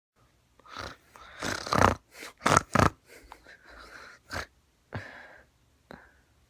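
A person snoring and breathing noisily while lying in bed, in about eight irregular short noisy breaths. The breaths are loudest between about one and a half and three seconds in and stop just before the end.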